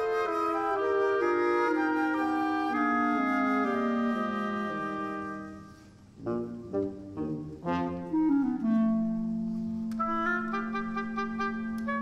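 Symphony orchestra playing, led by woodwinds. A line falls step by step for about five seconds and dies away briefly. Short detached notes follow, then a held low note under higher notes.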